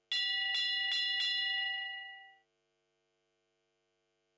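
A bell struck four times in quick succession, about half a second apart. Its ringing tone carries on for about a second after the last strike, then stops.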